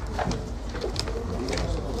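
A bird calling in low-pitched notes, with a few faint clicks.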